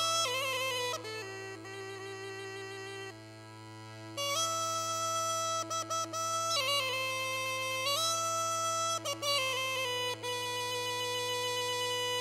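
Bagpipe playing a folk melody over a steady low drone. The melody eases off about a second in, holding a lower note and fading, then comes back strongly about four seconds in while the drone sounds throughout.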